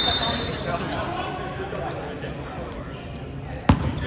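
Voices of players and spectators talking across a large gym, with a volleyball bounced once on the hardwood floor near the end, a single sharp knock.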